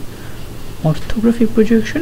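A person's voice resumes speaking about a second in, after a short pause, over a faint steady low hum.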